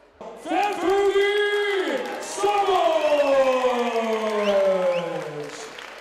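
A ring announcer's voice over the hall's public-address system, calling out in two long drawn-out calls, the second sliding slowly down in pitch for about three seconds, as in announcing a fight result. Crowd cheering and applause run underneath.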